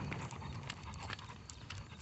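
A blue-nose pit bull's claws tapping on pavement as it walks on a leash: light, irregular taps, several a second.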